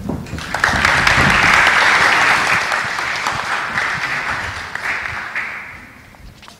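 Audience clapping, building quickly in the first second, strongest for the next couple of seconds, then tapering off toward the end.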